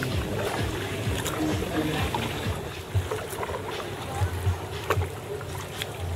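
Paddle strokes and water sloshing around an inflatable sea kayak, with indistinct voices of people in the background and a few dull bumps in the second half.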